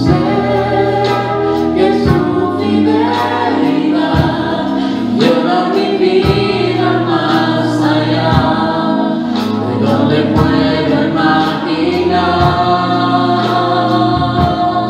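Two women singing a Spanish-language worship song into microphones over instrumental accompaniment, with a steady beat about once a second.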